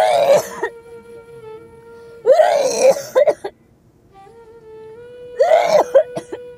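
A woman retching and gagging in three loud heaves, about two and a half seconds apart, over background music with a long held note.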